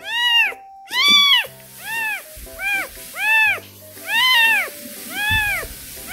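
Newborn orange-and-white kitten mewing: about eight high, arching cries in quick succession, each rising then falling in pitch. It is crying while being helped to pass stool, which it always cries at; its carer thinks it may be constipated.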